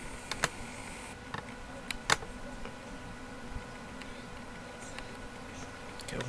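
Handheld camera zooming in: a short whir during the first second, then scattered light clicks from handling the camera, over a faint steady hum.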